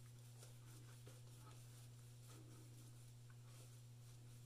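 Near silence over a steady low hum, with faint soft strokes of a PAA Starcraft synthetic shaving brush working lather on the face.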